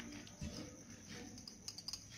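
Faint clicking and rustling as a hand mixes raw shredded potato on a steel plate, with a few sharper clicks near the end.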